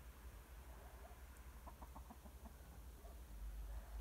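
A faint bird call about two seconds in: a quick run of about seven short notes.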